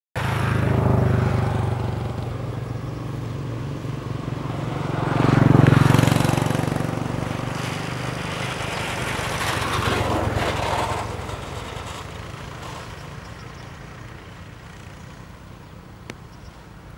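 Low engine rumble of a passing motor vehicle, swelling to its loudest about six seconds in, then fading away steadily over the last few seconds.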